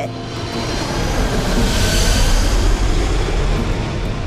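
A jet aircraft passing low overhead: a loud roar with a deep rumble that swells to a peak about two to three seconds in, then begins to fade. It is the intrusive kind of noise that residents under a flight path live with.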